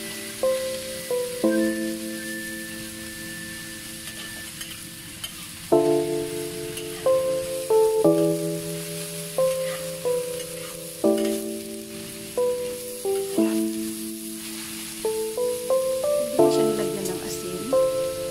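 Shredded Chinese cabbage, minced pork and mushrooms sizzling as they are stir-fried in a wok, with a metal spatula stirring and scraping. Background music of held chords changing every second or two lies over it and is the loudest sound.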